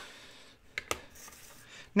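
Two light clicks about a second in, over faint handling noise: a plastic ink pad and its lid being set down and moved on a craft cutting mat.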